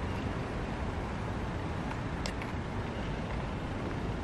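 A small car's engine running at low revs, a steady low rumble with outdoor background noise, as the car is manoeuvred slowly in reverse at walking pace.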